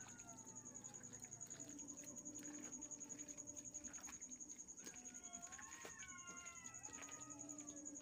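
Very faint sound of bare hands squishing chicken pieces through a wet marinade in a plastic bowl. Behind it, several faint drawn-out animal calls that rise and fall in pitch, and a steady high-pitched whine.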